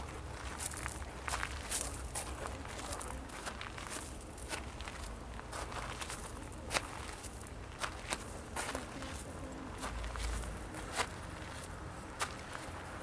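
Footsteps of a person walking, heard as irregular sharp taps close to the microphone over a steady low rumble.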